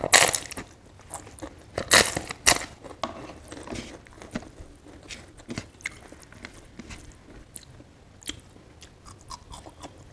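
Crisp roasted papad bitten and chewed close to the mouth. Loud crunches come at the start and again about two seconds in, followed by quieter chewing with small crunching clicks.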